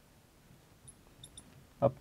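Marker squeaking faintly on a glass lightboard as it writes, a few short high squeaks in the middle, then one spoken word near the end.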